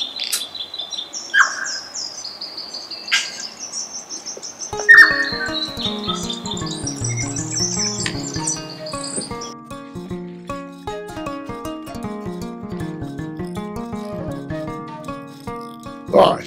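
A tui singing a run of high, held whistling notes broken by sharp clicks. About five seconds in, background music with a steady beat and a stepped melody comes in over the song and carries on alone once the bird notes fade.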